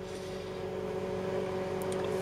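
A steady low hum with a few even overtones, unchanging in pitch, over a faint hiss.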